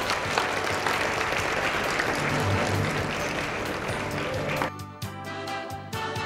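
Audience applauding over background music; the clapping dies away about four and a half seconds in, leaving the music playing on its own.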